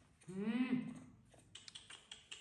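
A short hummed "hừ" from a woman, then soft crinkling of tissue paper being handled, heard as a quick run of small crackles and clicks over the last half second.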